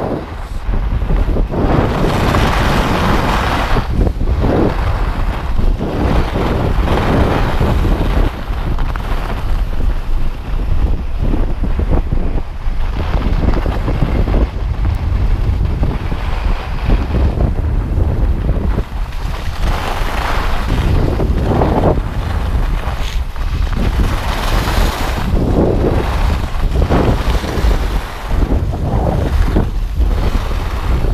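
Wind buffeting the microphone of a camera moving at skiing speed, a loud constant rumble, with the hiss and scrape of skis on packed snow rising and falling through the turns.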